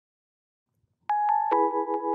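Silence, then about a second in an instrumental music intro begins: a high held note over quick light strikes, joined about half a second later by a lower sustained chord.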